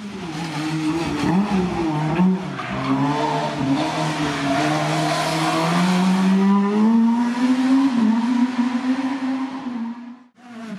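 Rally car engine working hard through a tight bend. Its pitch dips and wavers in the first couple of seconds, then rises steadily as the car accelerates away, with a hiss of tyre noise through the middle.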